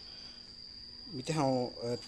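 A steady high-pitched insect trill, unbroken throughout, with a man's speech starting about a second in.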